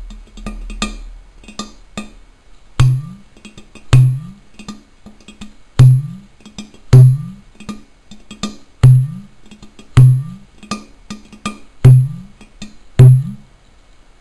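Udu clay pot drum played by hand: light finger taps on the clay body, then from about three seconds in, deep bass notes struck over the hole, about one a second, each bending upward in pitch, with quicker taps between in a steady rhythm.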